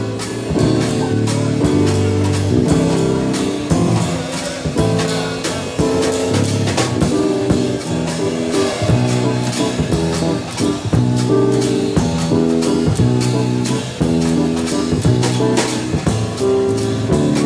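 Live instrumental jazz from a trio: electric bass, drum kit and a Korg Kronos keyboard playing together, with sustained chords over a steady drum beat.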